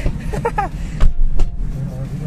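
Car passenger door pulled shut from inside with a sharp thud about a second in, followed by a lighter knock, over a steady low rumble inside the car.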